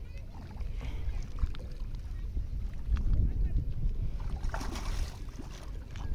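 Wind buffeting the microphone beside a river, a rough low rumble that grows louder about halfway through.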